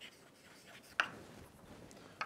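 Chalk writing on a blackboard: faint scratching strokes, with one sharp chalk tap on the board about a second in.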